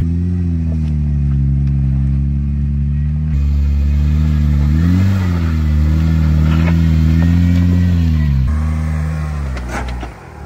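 Jeep Wrangler JK's engine pulling under load on a loose, rocky dirt climb: a steady low drone whose pitch rises briefly about halfway through and eases back. The sound jumps abruptly twice.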